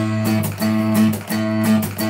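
Steel-string acoustic guitar strummed with the hand, chords ringing in a steady rhythm of several strokes a second.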